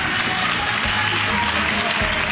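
Studio audience clapping over background music.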